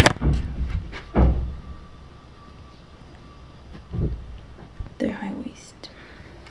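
Handling noise as a camera is picked up and moved: three dull thumps and knocks, near the start, about a second in and about four seconds in, with a brief vocal sound about five seconds in.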